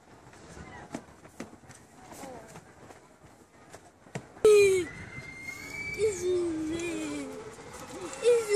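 A sharp knock about halfway through, followed by a child's long, wordless, wavering vocal sound, a drawn-out wail or moan that slides down in pitch and carries on. Before the knock there are only soft clicks and faint distant voices.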